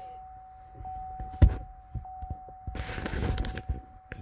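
A single sharp thunk about a second and a half in, then about a second of rustling, over a faint steady tone.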